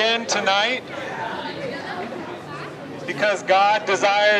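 A man preaching loudly into a microphone, with a pause of about two seconds in the middle filled by quieter street chatter.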